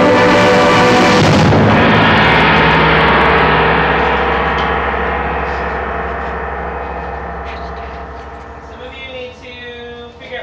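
Concert band holding a loud chord that stops about a second and a half in, leaving a struck metal percussion instrument ringing and slowly dying away over several seconds.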